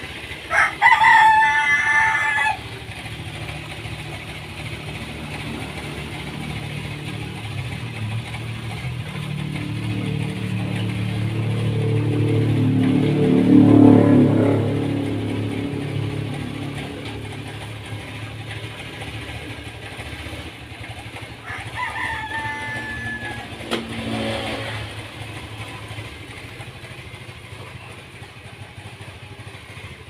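Honda automatic scooter engine running at idle after being started, rising once in revs toward the middle and settling back. A rooster crows loudly near the start and again about two-thirds of the way through.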